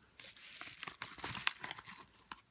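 A yellow padded paper mailer rustling and crinkling as it is picked up and opened, with a card in a plastic holder slid out. Quiet, with many small crackles and clicks.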